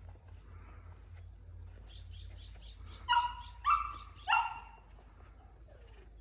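A dog barking three times in quick succession, high-pitched, about halfway through, with faint bird chirps in the background.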